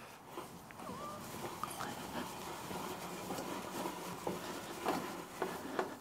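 A T-handle hex driver turning a bolt down into a metal mounting plate: faint scraping with a few light metallic clicks, more of them in the second half.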